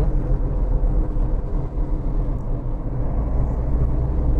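Car cabin noise while driving: a steady low rumble of engine and tyres on the road.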